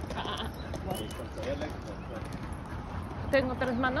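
A person's quick, staccato 'ah, ah, ah, ah' near the end, the vocal correction used to check a dog on leash, over a steady low street rumble.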